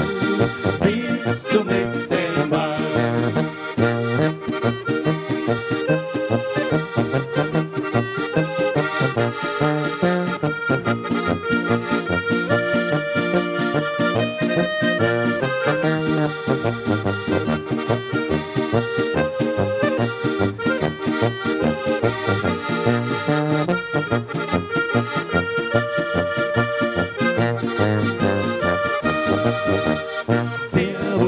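A live Alpine folk band playing an instrumental tune. A Steirische Harmonika (diatonic button accordion) leads, over clarinet, electric guitar and a tuba bass line.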